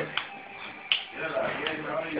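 Open-hand slaps on a man's ear: three sharp smacks evenly spaced about three quarters of a second apart, with voices between them.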